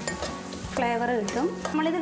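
Metal spoon stirring and scraping garlic, curry leaves and dry red chillies frying in oil in a metal pan, with the oil sizzling. A woman starts speaking about a second in.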